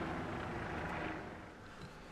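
Low, steady hum of the running SUV heard inside its cabin, easing down a little about one and a half seconds in.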